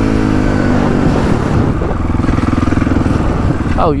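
Dirt bike engine with its revs falling over the first second or so as the throttle is rolled off, then running steadily at low revs.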